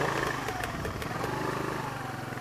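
Engine of the vehicle carrying the camera, running steadily at low speed with even firing pulses.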